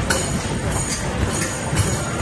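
Rubber basketballs striking the backboard and rim of an arcade basketball machine and rolling back down its ramp: a quick run of low thumps and a few sharper knocks over a constant arcade din.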